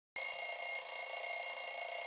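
Alarm clock ringing, a steady, unbroken high-pitched ring that starts just after the opening.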